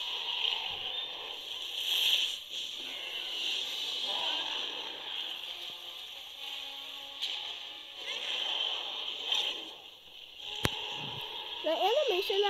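Water splashing and sloshing under background music, in swelling waves of noise with a sharp click near the end.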